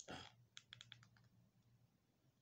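Near silence with a faint low hum, broken about half a second in by a quick run of about six faint clicks.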